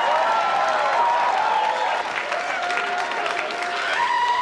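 Comedy club audience applauding and cheering, with dense clapping and shouts of voices mixed in, easing off a little about halfway.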